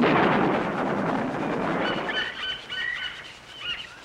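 Film soundtrack effects: a loud burst of noise that fades over about two and a half seconds, followed about two seconds in by a run of short, high electronic beeps at a few stepped pitches.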